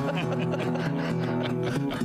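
Acoustic guitar playing a blues accompaniment between sung lines, its chord notes ringing steadily.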